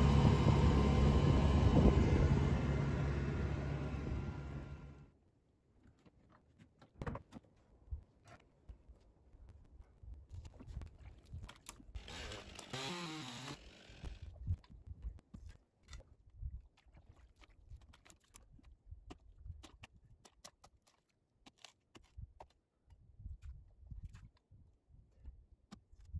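Boat outboard motor running steadily under way, fading out and cutting off about five seconds in. Then only faint scattered clicks and knocks.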